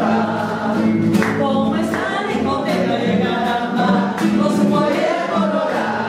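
Men singing together, a lead voice with others joining in, to two strummed acoustic guitars, with steady rhythmic strumming throughout.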